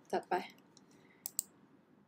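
Two quick, sharp computer mouse-button clicks close together, about a second in, submitting a web form, after a brief spoken word at the start.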